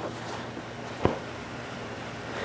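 A PVC pipe container tipping over onto a plywood board, giving a single short knock about a second in, over a steady background hiss.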